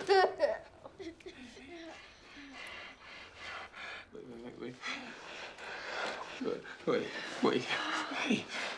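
Human voices without clear words: a brief laugh right at the start, then quieter scattered voice sounds, a low drawn-out vocal sound about four seconds in, and louder voice sounds near the end.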